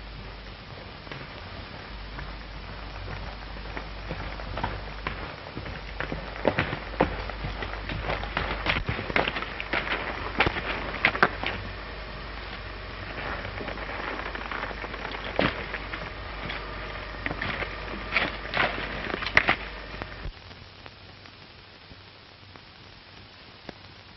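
Horse's hooves on a dry, leaf-strewn trail: a scatter of irregular clops and crunches, heaviest in the middle, that stops short about 20 seconds in. It sits over the steady hiss and low hum of an old film soundtrack.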